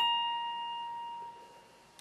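Electric guitar with a Les Paul-style body: a single high note picked at the 19th fret of the high E string. It rings out and slowly fades away.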